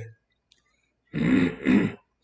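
A man coughing twice to clear his throat, starting about a second in.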